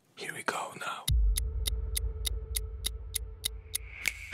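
Produced broadcast intro sound: a brief whispered voice, then a steady ticking beat, about three ticks a second, over a low bass drone.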